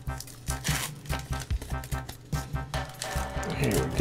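Foil wrapper of a Pokémon trading card booster pack crinkling and tearing as it is peeled open by hand, in short irregular rustles, over steady background music.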